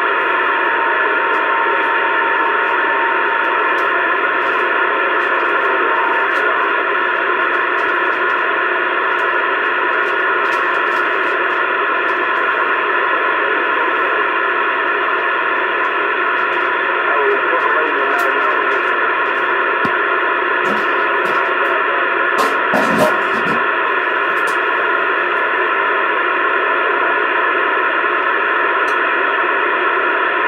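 CB radio receiver hissing with steady static on an open channel, the sound muffled and without treble. A thin steady whistle runs under the static for the first few seconds and then stops, and a few sharp clicks come about two-thirds of the way through.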